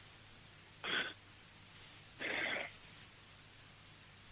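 Two short audible breaths in a pause in the conversation, one about a second in and a slightly longer one a little past two seconds.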